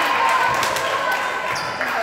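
Indistinct chatter of players and spectators in a gymnasium, with a ball bouncing a few times on the hardwood floor.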